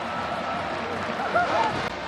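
Steady stadium crowd noise from spectators cheering a touchdown, with a brief snatch of a man's voice about a second and a half in.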